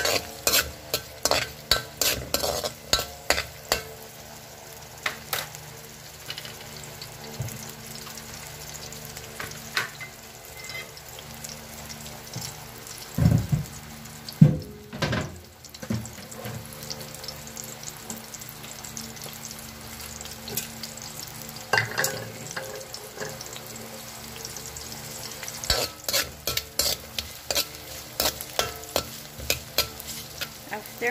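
Sliced ginger, garlic and red onion sizzling in oil in a metal wok, with a metal ladle clicking and scraping against the pan as they are stirred. The clicks come in quick runs at the start and again near the end, and a few dull knocks come about halfway through.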